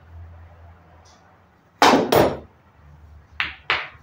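Pool balls clacking hard during a shot on a pool table: two loud clacks in quick succession about halfway through, then two more near the end.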